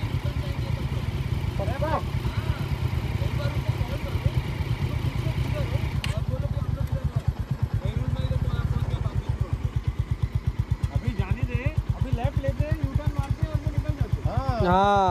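Motorcycle engines idling close by: a steady low throb whose pulses grow more distinct about eight seconds in.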